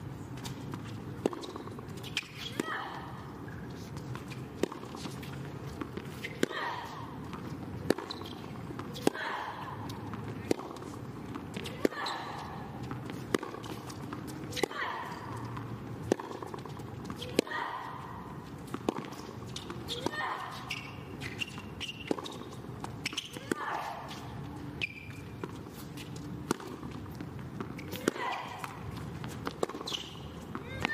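A tennis ball struck back and forth by rackets in a long rally, a sharp pop about every second and a half, most shots with a player's grunt, over a low crowd background.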